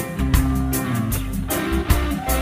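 Instrumental reggae music: a bass line and drum kit under short, rhythmic guitar strums, with no singing.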